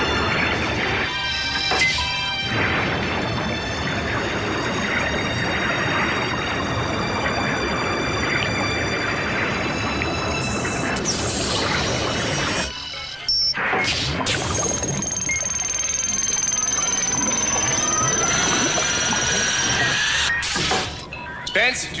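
A dramatic action-film score mixed with crash and impact sound effects, loud and continuous. Around the middle, a long high tone falls slowly while a whistling tone rises beneath it.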